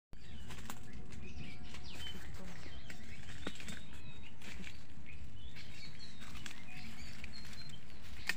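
Birds chirping, with many short scattered calls, over a steady low rumble, and a few sharp clicks and rustles in dry leaf litter.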